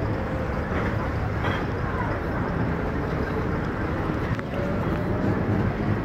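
Steady outdoor street noise with faint voices of people nearby.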